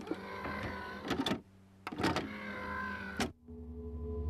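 A whirring, motor-like sound with several steady tones, broken by a short gap about a second and a half in, with a few sharp clicks, and cutting off suddenly near the end.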